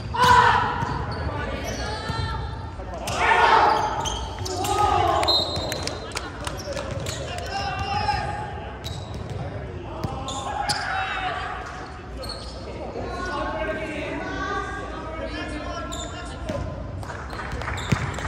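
Men's voices calling out across a large gymnasium, loudest near the start and again about three and a half seconds in. Sharp knocks of a volleyball being struck and bouncing on the hardwood floor come in between.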